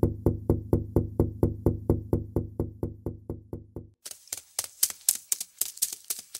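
Cartoon sound effect: a rapid, even run of knocks with a low thud, about six a second, for about four seconds. It gives way to lighter, sharper clicks like typing.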